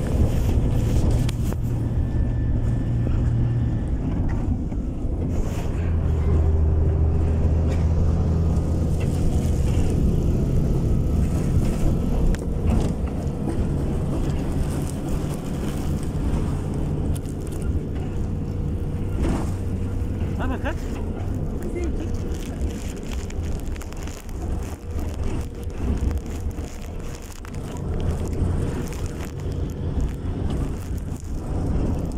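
Engine and road rumble heard from inside a moving passenger bus, the engine note shifting lower and higher a few times as the bus changes speed.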